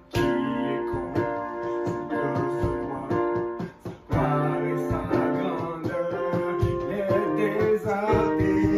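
Casio electronic keyboard played in chords and melody, the notes struck sharply and held, with a brief break about four seconds in.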